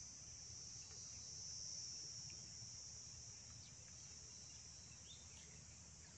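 Faint, steady high-pitched chirring of field insects, with a few faint ticks scattered through.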